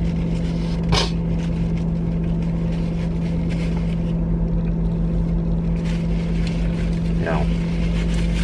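Steady low hum of a car's engine idling, heard inside the cabin, with one sharp click about a second in and a short murmur near the end.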